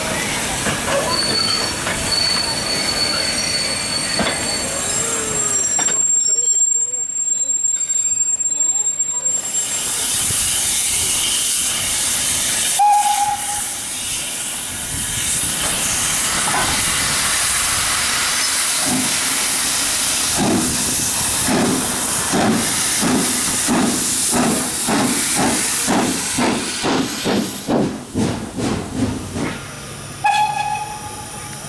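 GNR V class 4-4-0 steam locomotive No.85 Merlin hissing steam, with one short whistle blast about halfway through. In the second half its exhaust beats start up and quicken as it gets under way.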